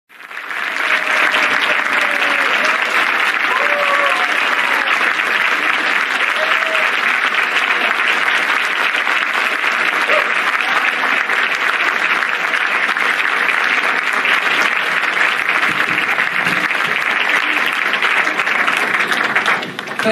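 Audience applauding steadily, with a few whoops and calls over the clapping in the first several seconds. The applause dies away near the end.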